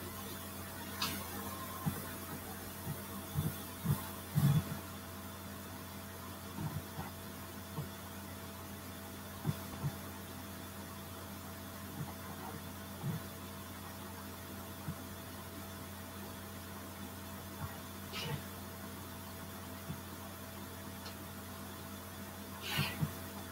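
Steady low electrical hum under quiet room tone, with faint, irregular low knocks and taps every second or two.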